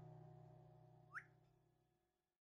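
Very faint: the last note of the guitar soundtrack music ringing out and fading away, with one short chirp-like whistle that rises in pitch just over a second in.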